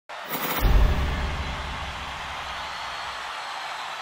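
Intro sting: a sharp hit about half a second in, followed by a deep boom that dies away over about three seconds.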